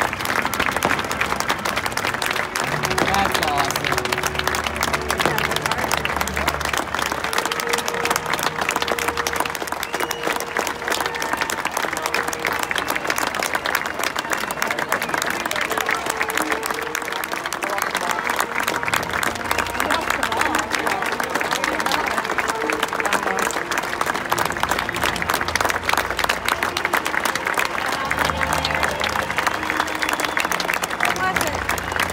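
Stadium crowd applauding steadily while music and a voice play over the public-address system.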